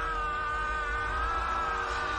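A long, high-pitched human scream held on one nearly steady pitch, sagging slightly, over a steady low tone.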